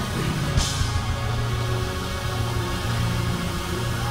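Live worship band playing an instrumental interlude: sustained low keyboard and bass chords, with one loud hit about half a second in.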